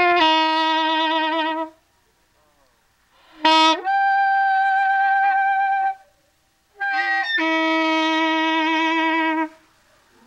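Saxophone playing three long held notes with vibrato, separated by short pauses. The middle note begins with a quick slide up to a high pitch; the first and last sit low.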